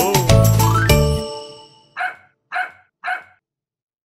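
Children's song music ends about a second in and rings out. A puppy then barks three times in short yips about half a second apart.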